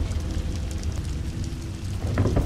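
A low, steady rumbling drone from a horror drama's soundtrack, with a faint hiss above it.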